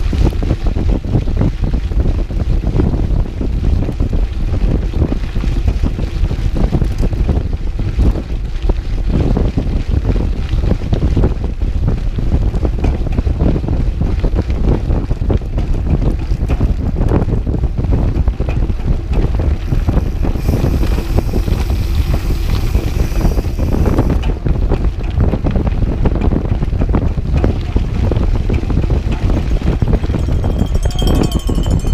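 Wind buffeting the microphone of a GoPro action camera on a moving mountain bike: a loud, steady low rumble. A brighter hiss rises over it for a few seconds about two-thirds of the way through.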